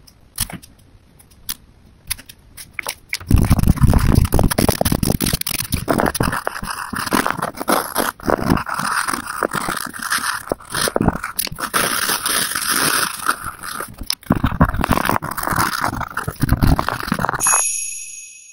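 A brush pen gives a few light ticks on paper. From about three seconds in, a coloured pencil scratches and rubs steadily across drawing paper as it shades, loud and close, until it stops suddenly just before the end.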